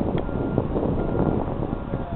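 Wind buffeting the microphone: a steady, rumbling noise with outdoor background hum beneath it.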